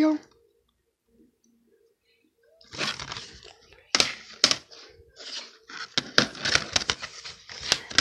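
Plastic DVD cases being handled: after a couple of seconds of near silence, crinkling and scraping with several sharp plastic clicks.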